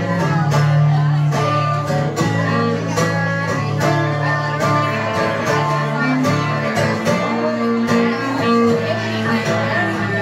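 Acoustic guitar strumming, with a bowed electric cello holding sustained low notes beneath it: an instrumental passage of a slow blues with no singing.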